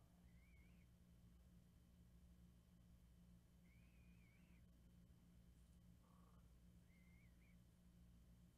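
Near silence: a steady low electrical hum, with three faint, short, high warbling chirps spread across it.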